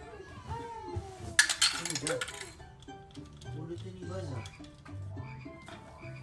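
Plastic toy building blocks clattering for about a second, over background music and a voice.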